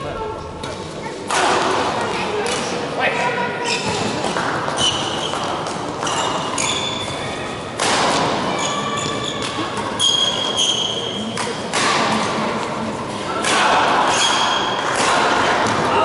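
Badminton play in a large hall: sharp racket strikes on the shuttlecock at irregular intervals, with short high squeaks of court shoes on the floor, all echoing. Players' voices come between the shots.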